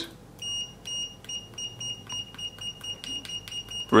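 Brymen TBM251 digital multimeter's continuity beeper giving a rapid string of short, high beeps, about four a second, each with a faint click of the test-probe tips tapping together. The beeper answers each touch relatively fast.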